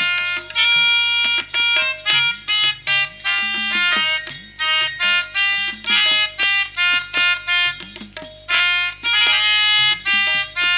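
Instrumental interlude of stage-drama music: tabla played with swooping bass-drum strokes under a fast melody of short, ornamented notes on a melody instrument.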